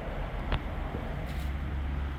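Steady low background rumble, loud enough to need an apology, with a single light click about half a second in.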